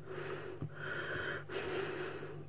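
A person breathing audibly, two soft breaths in a pause between spoken remarks, over a faint steady low hum.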